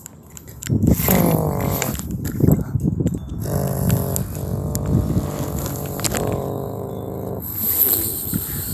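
A person's voice imitating racing car engines in long held tones while Cars die-cast toy cars are pushed along a play mat, with a few sharp clicks as the toys knock together.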